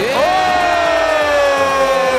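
A voice holding one long high note, rising quickly at the start and then sliding slowly down for about two seconds, over crowd noise.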